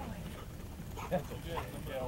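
People talking and laughing, with a dog giving a short bark about a second in.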